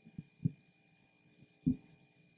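A few soft, low thumps picked up by a handheld microphone at uneven intervals, the loudest near the end, over a faint steady hum.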